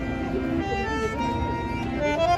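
Bandoneon played by a street musician: held notes and chords that change pitch every half second or so. A low rumble runs beneath them.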